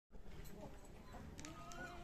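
Faint farmyard background with a few light clicks or taps, and a short high call that rises and then falls near the end.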